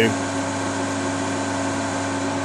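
Steady whir of power-supply cooling fans running under load, with a steady hum tone through it.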